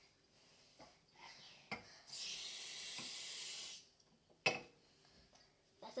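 Water poured in a steady stream for about a second and a half while measuring it out in a measuring jug, with a couple of light knocks before and after.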